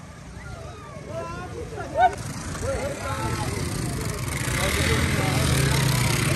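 Voices of people talking over a steady low rumble, with a broad rushing noise swelling from about four and a half seconds in.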